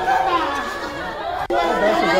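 Several people talking over one another in an agitated jumble of voices, cut off by a brief drop about a second and a half in.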